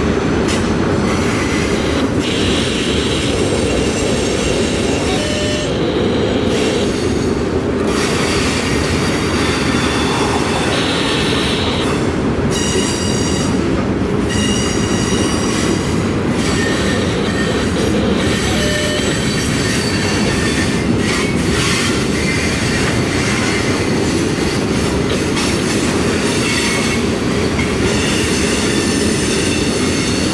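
Freight train of autorack cars rolling past: a steady rumble of steel wheels on rail with high-pitched wheel squeal that comes and goes as the cars take the curve.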